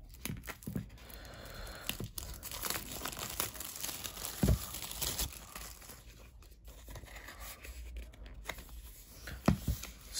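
Clear plastic shrink wrap being peeled and torn off a cardboard box, the film crackling and crinkling irregularly. There is a soft thump about halfway through and a couple of sharp clicks near the end as the box is handled.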